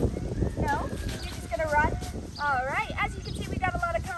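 Footsteps and a dog's paws crunching through dry fallen leaves as a person and a large dog walk briskly together, with high-pitched, wavering vocal sounds that rise and fall over them, strongest a little past the middle.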